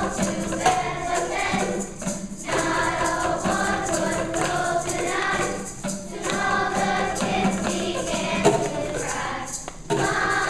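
A children's choir of fifth graders singing together, in phrases broken by short pauses about every four seconds.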